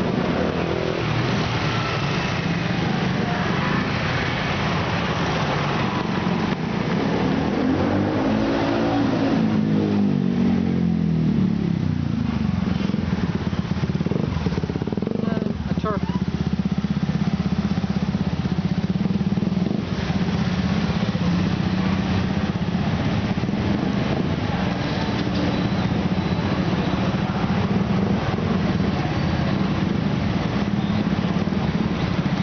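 Dense motorbike street traffic heard from close range: small motorbike engines running steadily, with one engine's pitch rising and falling about a third of the way in, then a steady engine hum for the rest. A brief spoken word comes about halfway through.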